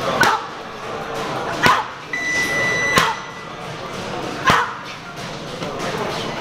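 Gloved punches landing on a large padded body shield: four heavy thuds about a second and a half apart. A short high electronic beep sounds just after the second strike.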